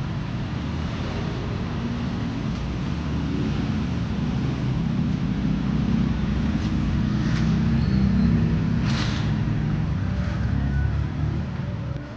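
Steady low rumble of street traffic, with a brief hiss about nine seconds in; the rumble drops off near the end.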